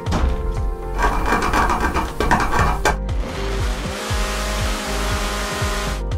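Cordless Ryobi oscillating multi-tool cutting into the wooden wall framing, a dense buzzing rasp that is coarsest for the first few seconds and then settles into a finer, steady hiss. Background music with a steady beat plays throughout.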